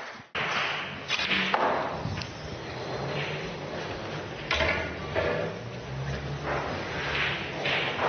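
Snooker balls clicking: the cue striking the cue ball and ball knocking on ball, with further sharp knocks a few seconds later.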